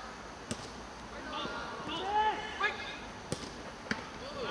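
A football being kicked: three sharp thuds, one about half a second in and two close together near the end, with players shouting across the pitch between them.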